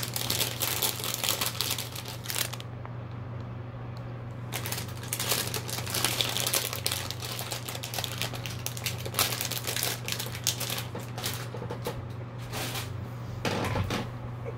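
Rapid, dense clicking and rattling of small objects being handled, in two long stretches with a pause of about two seconds between them, over a steady low hum.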